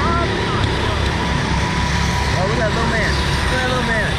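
Steady low rumble and hiss picked up by the onboard camera of a swinging Slingshot ride capsule, with faint scattered voices in the background.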